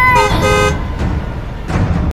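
Horn-like comic sound effect: a loud, high held toot that bends downward, then a short two-note honk, followed by a rough rumbling noise.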